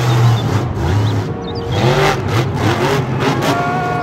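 Monster truck engine revving hard, its pitch rising and falling repeatedly as the throttle is worked.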